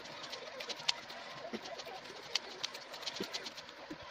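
Scissors snipping through corrugated cardboard, a run of sharp irregular clicks, with a pigeon cooing in the background.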